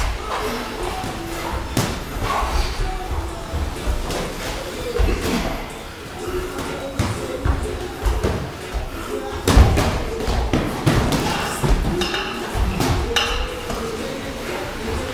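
Boxing gloves landing on headgear and body during sparring, with feet shuffling and stamping on the ring canvas: scattered sharp thuds, the loudest about nine and a half seconds in.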